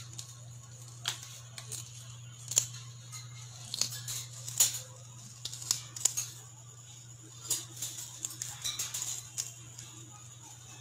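A parrot biting and crunching a small piece of food in its beak, giving irregular sharp clicks and crunches, the loudest about halfway through and a quick run of them near the end. A steady low hum runs underneath.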